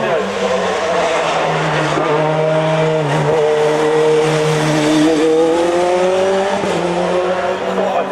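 Dallara F302 Formula 3 car's Opel Spiess four-cylinder engine running hard on a hill climb. Its note dips about three seconds in, then rises steadily for several seconds as it accelerates up through the revs, and levels off near the end.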